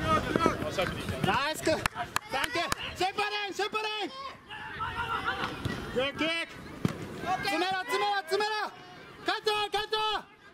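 Players' voices shouting short calls to one another across the field, several times, over a general hubbub, with a few sharp knocks in between.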